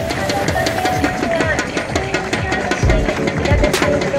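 Background music with a steady beat: a melody line over quick, even ticking percussion, with heavy kick-drum hits coming in near the end.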